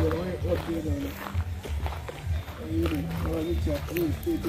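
Background music: a hummed vocal melody over a low bass line.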